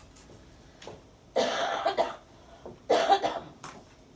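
A person coughing twice, the coughs about a second and a half apart.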